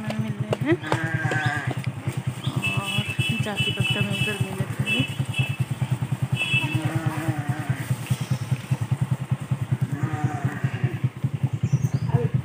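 A flock of sheep and goats bleating now and then as it moves along, over the steady low putter of a motorcycle engine running close by.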